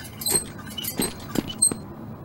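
A quick run of short, high-pitched squeaks and chirps mixed with light clicks, spread through the two seconds.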